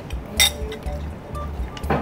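A metal spoon clinks sharply once against a ceramic soup bowl about half a second in, and there are liquid sounds of soup being spooned and sipped near the end. Background music plays underneath.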